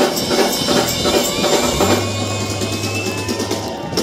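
Live band music: drum kit and hand percussion keep a steady beat for about two seconds, then the band holds a long sustained chord over a low bass note.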